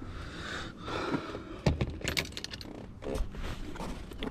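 Handling noise from a camera gripped and moved by hand: rustling, then a knock and a quick cluster of light clicks and rattles about two seconds in.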